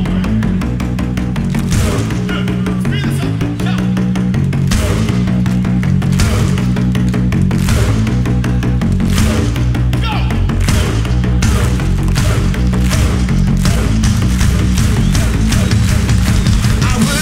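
Rock band playing live on a festival stage: electric guitars, bass and drums, with repeated cymbal crashes.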